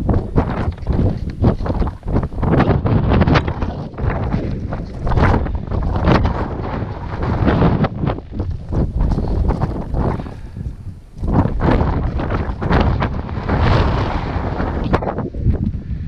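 Wind buffeting an action camera's microphone during a downhill ski run, with skis scraping and hissing through the snow on the turns. The noise surges and eases with each turn and drops briefly about eleven seconds in.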